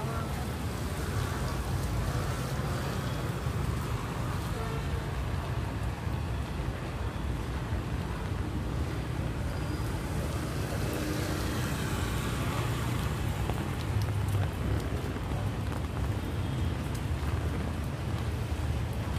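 Busy street ambience dominated by motorbike and car traffic: a steady low engine rumble under a constant hiss.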